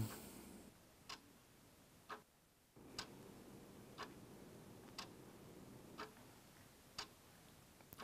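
A clock ticking faintly, one tick a second, seven ticks in all.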